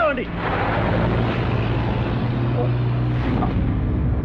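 An open-top vehicle's engine running as it drives, a steady low hum under road and wind noise; the hum drops away a little before the end. A man's shout cuts off at the very start.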